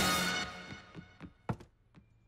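The tail of a music sting fades out in the first half-second, then a few light knocks of a small object being set down on a desk, the loudest about a second and a half in.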